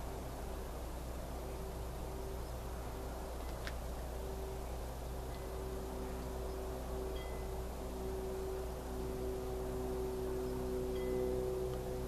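Faint, sustained chime-like tones that hold and shift slowly over a steady low hum, with one short click about four seconds in.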